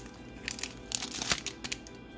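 Plastic packaging crinkling off camera in several short bursts, loudest about a second in, over steady background music.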